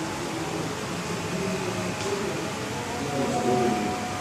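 Indistinct talking in a room over a steady hiss of background noise, the voice loudest near the end, with a small click about halfway through.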